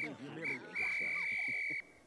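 Faint cartoon voices with a high, steady tone from the soundtrack: two short blips, then one held for about a second before the sound cuts off.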